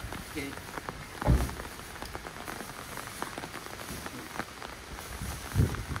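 Filled sandbags being handled and dropped onto a pile: two dull thuds, about a second in and near the end, among scattered rustling and scraping of the bags.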